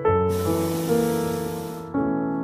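Piano music, with a hissing blast from a hot air balloon's propane burner that starts about a third of a second in and cuts off sharply about a second and a half later.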